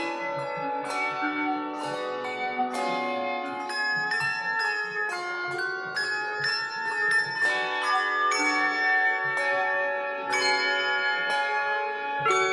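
A handbell choir ringing a piece: a steady run of struck bell notes, often several at once in chords, each note ringing on after it is struck.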